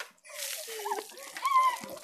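Buckets of ice water splashing over a person and onto the wet pavement: a rushing splash that starts just after a brief near-silent gap and keeps going. A child's voice calls out briefly in the middle.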